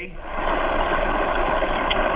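Steady rushing hiss over a telephone line, about two and a half seconds long, cut off sharply above the phone's narrow bandwidth and sounding muffled.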